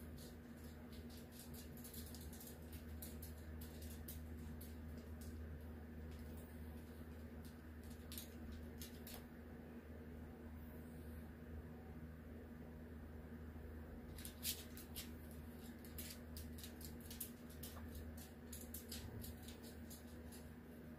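A fine paintbrush lightly ticking and scratching on glossy photo paper in short, scattered strokes over a steady low hum.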